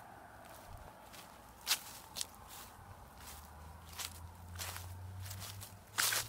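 Footsteps in grass, a few scattered steps, with a faint low hum underneath that comes up about halfway through.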